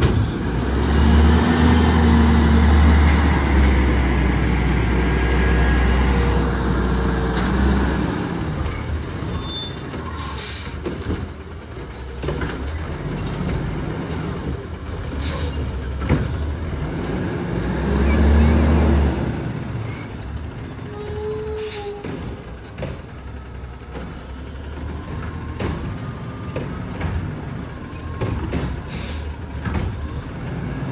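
Autocar ACX front-loader garbage truck's diesel engine revving as the truck pulls away, easing off, then revving up again about halfway through. A few short air brake hisses come in between.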